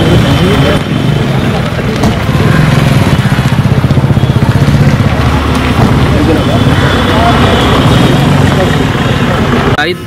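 An engine running steadily at idle close by, a low throb with a rapid even pulse, under indistinct talk from a crowd.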